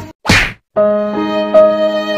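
A short, loud swishing hit sound effect, timed to a cat's swat, then background music with long held notes starts just under a second in.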